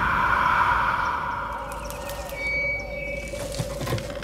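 Eerie horror-trailer sound design: a held drone tone over a low rumble, with a hissing wash that fades away and a few faint short sliding sounds in the middle.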